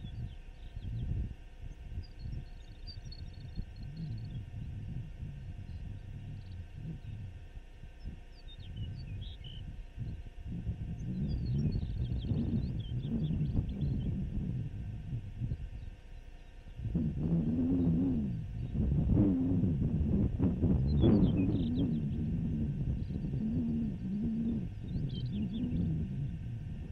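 Wind buffeting the microphone: a low, uneven rumble that gets louder about two-thirds of the way in, with a wavering low tone over it and a few faint high chirps.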